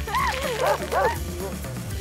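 Cartoon puppies yapping, several short barks in quick succession over bouncy background music; the yaps stop a little after the first second while the music carries on.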